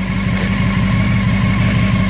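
Honda CBR600 F4i motorcycle's inline-four engine idling steadily and purring, running smoothly after sitting unused for six years.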